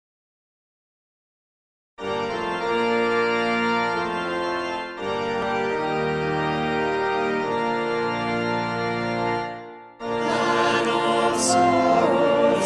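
After about two seconds of silence, an organ plays a hymn introduction in sustained chords that fade out just before ten seconds in. A choir then comes in singing the hymn's first verse.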